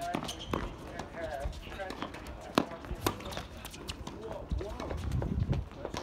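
Tennis rally on an outdoor hard court: sharp racket-on-ball strikes and ball bounces, the loudest crack about two and a half seconds in, among players' running footsteps.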